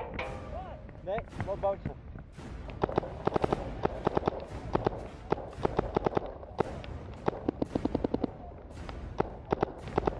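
Tippmann 98 Custom Pro paintball marker firing rapid strings of shots, starting about three seconds in, mixed with other markers popping across the field.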